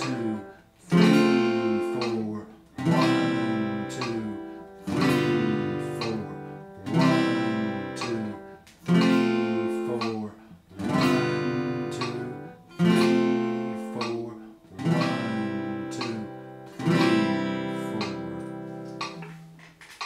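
Steel-string acoustic guitar strummed with single down strokes, one chord about every two seconds, each left to ring and fade before the next, changing chords from strum to strum in a slow beginner chord-change exercise.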